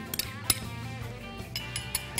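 Soft background music with a few light clinks of a metal spoon against a stone mortar as garlic is put into it.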